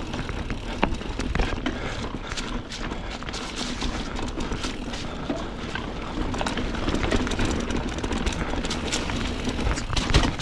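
Mountain bike rolling over a rocky trail: tyre noise on rock and dirt, with frequent clicks and knocks from the bike rattling over the rocks, over a low rumble.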